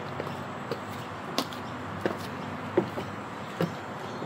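Footsteps of black 6-inch platform high-heel mules clicking on wet paving, about six uneven steps, over a steady background hiss.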